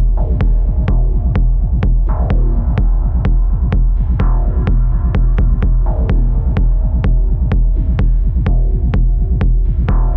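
Dark minimal techno played live on hardware synthesizers and a modular synth: a deep, steady bass drone under an even ticking beat about three to four times a second, with falling synth sweeps about two and four seconds in.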